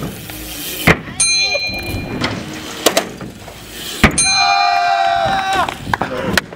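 BMX bike hitting and landing on a skatepark ramp: several sharp impacts, the first followed by a short metallic ring. After the last impact comes a held high-pitched tone of about a second and a half that drops away at the end.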